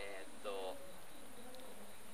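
Steady, high-pitched drone of insects in summer vegetation, with a brief vocal murmur from a person about half a second in.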